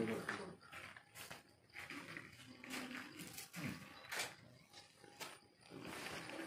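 Faint, indistinct low talking from a few people, with a few light clicks or taps.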